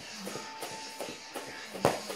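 Soft thuds of bare feet jogging in place on a foam play mat, about two a second, with a sharper, louder knock near the end. Faint music plays underneath.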